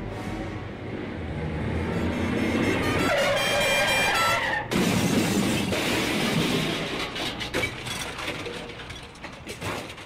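Car-crash sound effect: a car sound builds over the first few seconds and ends in a high held tone. At about four and a half seconds it cuts to a sudden loud crash, with breaking glass and crunching debris that fade out over the next five seconds.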